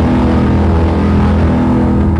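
Loud, steady low rumble with a held low chord under a noisy hiss, beginning abruptly just before and holding level throughout. It is a dramatic edited-in sound effect or music sting, leading into drum hits.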